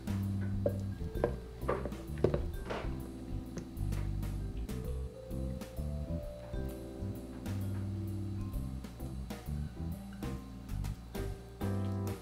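Instrumental background music with guitar over held low notes, with a few light clicks.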